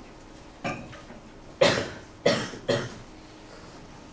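A person coughing: one small cough, then three loud coughs in quick succession.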